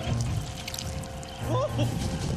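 Cartoon soundtrack music and sound effects: a low held note under a gurgling, pouring-like effect, then a run of quick squeaky up-and-down pitch glides starting about one and a half seconds in.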